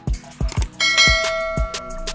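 Hip-hop style background music with a steady drum beat. A little under a second in, a bell-like ding rings out and holds for about a second and a half before fading.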